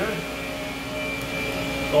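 Steady hum of running machine-shop machinery, with a thin high whine held over a low drone.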